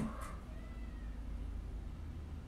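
Quiet room with a low steady hum. A faint, brief high-pitched tone, falling slightly, comes about half a second in.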